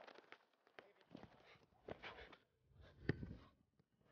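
Scattered thuds of soccer balls being touched and kicked by several players dribbling, with one sharper, louder kick about three seconds in.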